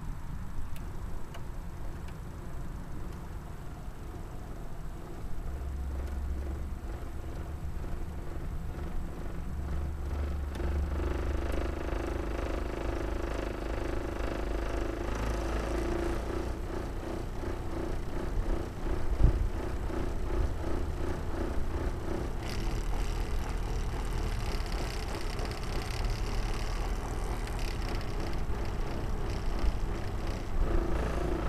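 Subaru car engine idling steadily with its add-on alginator fuel system hooked up. There is a single sharp knock a little past halfway, and a higher hiss joins in about three-quarters of the way through.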